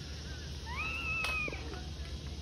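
A person's high-pitched, drawn-out squeal lasting about a second, rising at first and then held before it breaks off.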